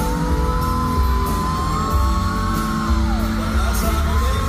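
Live pop concert music heard through a crowd's fancam recording: a pulsing bass beat under a male singer on a handheld microphone, with a long high held vocal note that bends down and breaks off about three seconds in, and yells from the audience.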